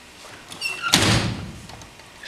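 A single loud wooden slam about a second in, with short high squeaks just before it.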